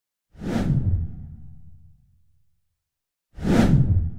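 Two whoosh sound effects from an intro title card. The first comes about a third of a second in, with a deep rumble that fades over about two seconds, and the second starts near the end.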